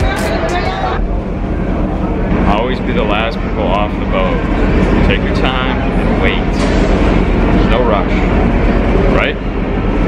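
Ferry boat's engine droning steadily, with people's voices talking over it.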